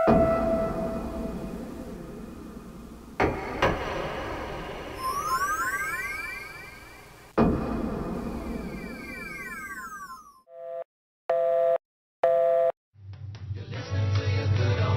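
Sound-effect soundtrack: three sudden deep hits, each dying away slowly, about three to four seconds apart, with synthesized tones gliding up and then down between the later two. Then three short two-tone electronic beeps like a telephone busy signal, and music starting near the end.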